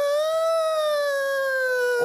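A person's long, high-pitched vocal wail held for about two seconds, starting suddenly, rising slightly and then sliding slowly down in pitch: a ghost's howl performed in a comedy sketch.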